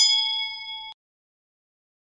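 Notification-bell 'ding' sound effect, struck once and ringing with a few clear bell tones for just under a second, then cutting off abruptly.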